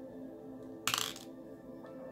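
Soft background music with steady held tones, and one short, sharp clink about a second in.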